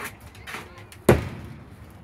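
A single sharp pop about a second in: a pitched baseball hitting the catcher's mitt.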